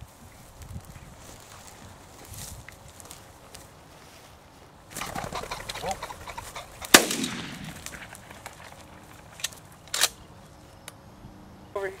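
A pheasant flushes from the grass with a brief flurry. About two seconds later comes a loud shotgun shot, the loudest sound, with a ringing tail. A second, lighter shot follows about three seconds after that.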